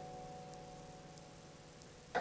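Piano chord, the closing chord of a solo piece, sustained and slowly dying away to near silence, with faint regular ticking about every two-thirds of a second underneath.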